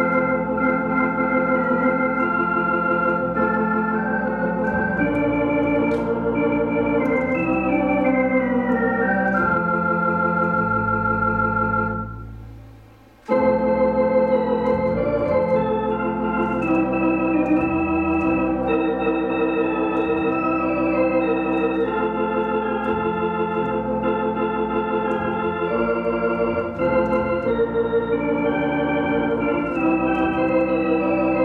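Elka X19T two-manual electronic organ playing a hymn in F major: sustained chords over a held bass line. About twelve seconds in, the chords die away to a brief lull of about a second before the next phrase starts abruptly.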